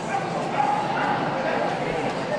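A dog yapping and whining amid steady crowd chatter.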